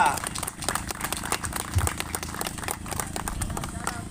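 A small crowd applauding: many hands clapping in a dense, uneven patter that dies away near the end.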